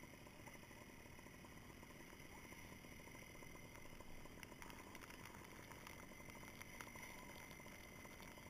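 Near silence: a faint, muffled, steady hiss, with a few faint clicks in the second half.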